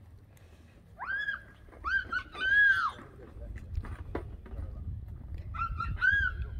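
A young child's high-pitched squeals: a few short rising-and-falling cries in the first half and another near the end. A low rumble on the microphone runs under the second half.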